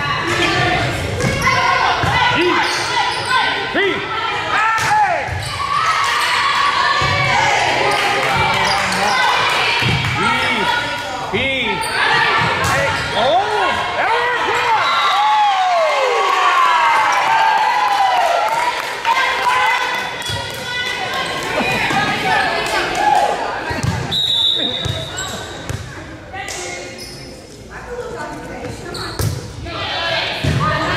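Volleyball match in a gymnasium: spectators and players shouting and cheering through a rally, with ball hits and thuds echoing in the hall. A referee's whistle blows briefly a few seconds before the end, signalling the next serve.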